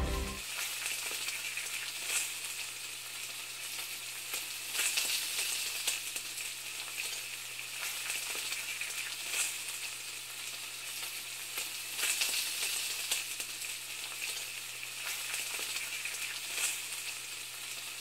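Steady crackling hiss with scattered clicks, over a faint steady low hum.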